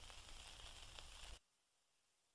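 Near silence: the faint hiss and crackle of an old recording's background noise after the song has ended, with a faint tick about a second in. It cuts off abruptly to dead silence about 1.4 s in.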